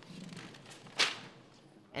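A single short, sharp swish of paper being handled, about a second in.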